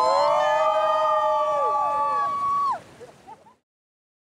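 A group of people cheering together with a long, held "woooo", many voices at once, which breaks off after almost three seconds and trails away, over the rushing of the jacuzzi's bubbling water.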